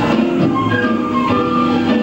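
Live band playing smooth jazz: drums, electric bass and guitars under a moving lead melody line.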